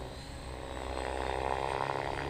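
Thunder Tiger Raptor E700 electric RC helicopter flying at a distance, its rotor and motor giving a steady hum that grows slightly louder.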